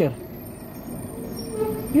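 Street traffic: a motor vehicle running, heard as a low, even rumble with a faint steady tone in the second half.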